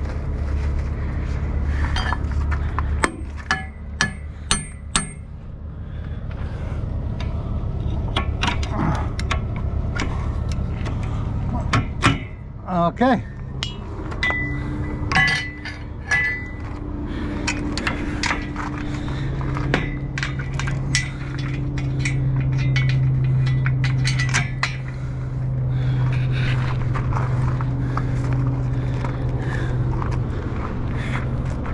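Sharp metal clinks and knocks from hands working at a road train trailer's rear fittings, with a quick run of ringing clinks about three seconds in. A truck engine idles as a steady low hum underneath.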